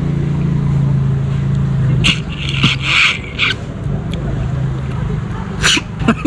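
Slurping as the meat of a cooked sea snail is sucked out of its cut shell, loud for about a second and a half starting some two seconds in, over a steady low hum.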